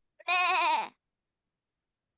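A goat bleating once: a short, quavering call of under a second, a sound effect from a recorded children's counting song.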